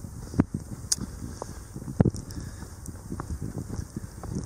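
Footsteps through deep fresh snow, a few irregular soft crunches, with wind rumbling on the microphone.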